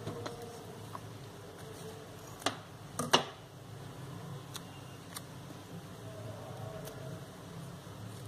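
Scissors snipping green floral tape: two sharp clicks a few seconds in, then a few faint ticks as the tape is handled, over a low steady hum.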